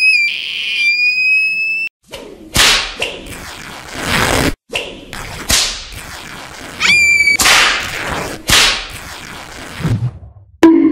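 A whistle tone rises and is held until about two seconds in. Then comes a series of whooshing swishes, about six in all, with a second short whistle about seven seconds in.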